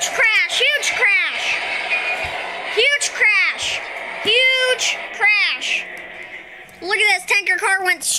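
A high-pitched voice talking in short bursts, the words unclear.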